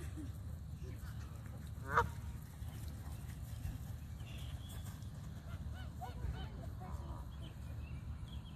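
Geese honking: one loud honk about two seconds in, then fainter honks and calls from the flock around six to seven seconds.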